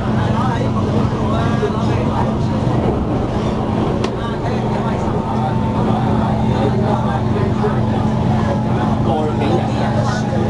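MTR K-train running at speed, heard from inside the car: a steady rumble of wheels on track with a constant low hum from the traction equipment. Voices murmur faintly over it.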